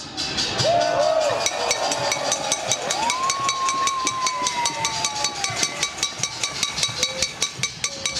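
Demonstrating crowd answering the speaker by banging pots and pans in a fast, even beat, with a long falling tone, like a shout or a horn, about three seconds in.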